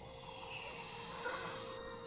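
A man breathing hard, faint, over a faint steady held tone.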